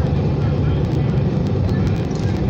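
Steady low rumble of a car being driven on a city road, heard from inside the cabin: engine and tyre noise.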